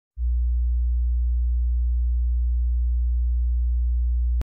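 A steady, very deep electronic sine tone, a low hum held at one pitch without change, starting just after the beginning.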